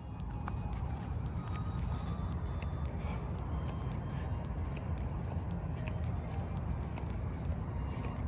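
Steady outdoor noise with a low rumble, typical of wind and handling on a handheld phone microphone while walking, with a few faint short high chirps.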